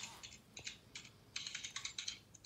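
Ballpoint pen writing on paper laid on a granite countertop: a series of short, faint scratchy strokes, sparse at first and coming thick and fast in the second half.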